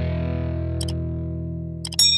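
Intro music: a sustained distorted electric guitar chord ringing out and slowly fading. Over it come a short mouse-click sound effect about a second in and a quick double click near the end, from an animated subscribe-button press.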